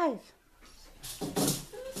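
A plastic hula hoop rustling and scraping over carpet as a dog pushes through it, starting about a second in.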